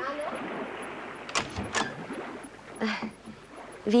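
Two quick knocks on a door, about a second and a half in, over a steady background wash of sea surf; a softer sound follows about three seconds in.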